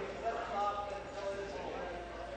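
Murmur of many voices talking at once in a large legislative chamber, with a few light knocks in the first second.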